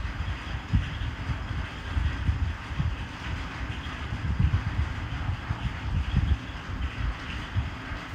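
Wind buffeting the microphone outdoors, an uneven, gusty low rumble with a faint steady hiss behind it.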